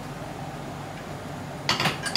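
Steady low background hum, then near the end a quick run of metal clinks and scrapes as a utensil knocks against a metal cooking pot while tomato sauce is tipped in.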